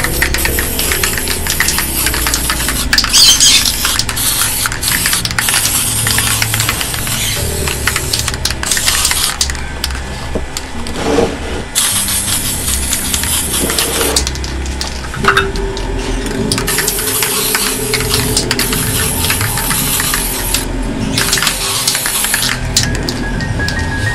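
Aerosol spray-paint can hissing in repeated bursts of one to four seconds with short pauses between them, over background music.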